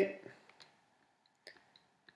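A few faint, sharp clicks from the computer input being used to draw on a digital whiteboard; the loudest comes about one and a half seconds in. The tail of a spoken word trails off at the very start.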